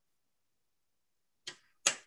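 Two sharp clicks about half a second apart near the end, the second louder, after a stretch of silence.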